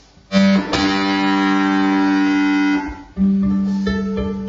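Violin bowed on a low note that starts suddenly about a third of a second in and is held for over two seconds. After a brief break, the same low note comes in again with rapid pulsing strokes under it.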